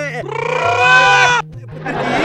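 A long, loud cry with a wavering pitch lasting about a second, then a shorter, rougher cry near the end, over background music with a repeating bass line.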